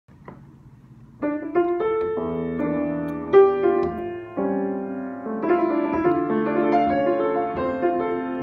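Grand piano played solo as a slow jazz ballad: after a near-quiet first second, rich sustained chords and a melody line begin and ring on.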